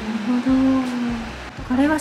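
A woman's voice humming one held, steady note for about a second, then speech starting near the end.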